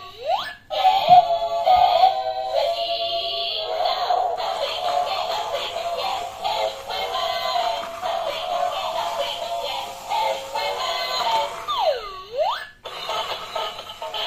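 Tinny electronic song with a synthesized singing voice, played by a battery-powered dancing doll toy as it dances. About twelve seconds in, the song breaks briefly for a swooping down-and-up tone.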